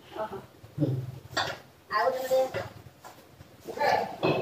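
Speech only: short bits of conversational talk with pauses between them.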